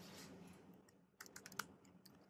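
Faint keystrokes on a computer keyboard: a quick run of about half a dozen key clicks just past the middle.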